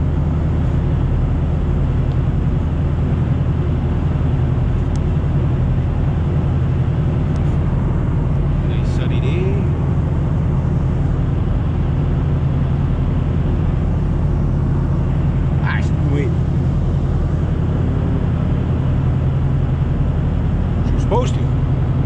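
Steady engine and tyre drone of a Honda car driving on the road, heard from inside the cabin.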